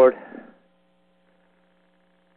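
Faint, steady electrical mains hum on the recording, heard alone in a pause after the end of a man's spoken word in the first half-second.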